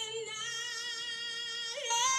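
A female singer belting long held notes with vibrato. One note ends just after the start and another follows, with a quick rising-and-falling vocal run near the end.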